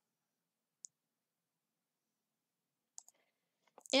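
Near silence with a few faint, short clicks: one about a second in and two about three seconds in.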